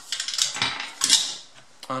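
Small metal parts of a wet/dry vacuum's motor, the shaft washers and fan, clinking and rattling against each other as they are handled. The clinks come in two short clusters about a second apart.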